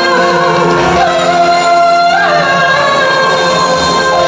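A woman singing a Korean trot song live into a handheld microphone over the song's amplified accompaniment, holding long notes with a downward slide in pitch about halfway through.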